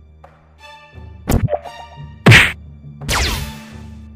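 Dubbed fight sound effects over a low background music drone: a short ringing tone, a sharp hit, then a very loud punch-like impact a little past two seconds, followed by a noisy burst that falls in pitch near the end.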